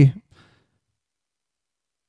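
A man's speaking voice trails off just after the start, followed by a soft breath and then near silence.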